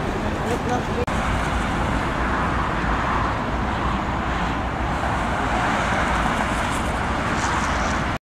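Steady road traffic noise from vehicles on a busy city street, an even rush of engines and tyres without distinct events.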